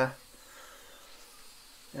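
Faint, steady high hiss of an angle grinder deburring steel, mixed low under a man's voice. The voice speaks briefly at the start and again at the very end.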